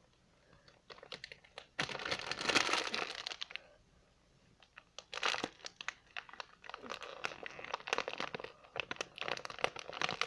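Plastic snack-chip bag crinkling and crackling as it is pulled and torn open by hand. It is loudest about two seconds in, eases off near four seconds, then crinkles again with scattered crackles.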